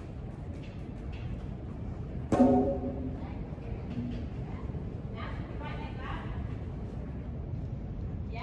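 Indistinct voices over a low steady rumble, with one short, loud voiced call about two seconds in.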